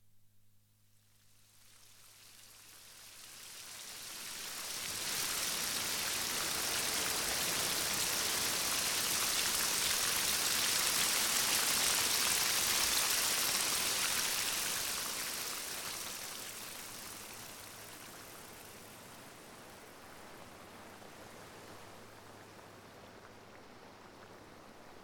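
A rushing hiss like heavy rain that swells up over the first few seconds, holds loudest in the middle, then fades to a low steady hiss, with a faint low hum underneath.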